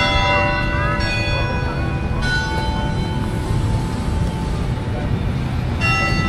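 Manila Cathedral's church bells ringing: struck several times, with new strikes about one, two and six seconds in, each leaving long overlapping ringing tones. A low rumble runs underneath.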